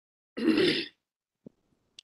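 A man clearing his throat once, briefly, followed by a faint click about a second later.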